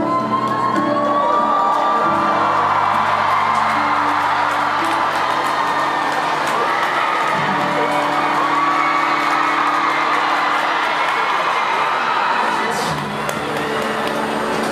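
A large audience cheering and screaming in many high voices as a ballad ends. The song's last chords are held underneath and fade out near the end.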